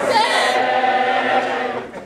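A roomful of men and women singing together, the voices holding a long note that breaks off just before the end.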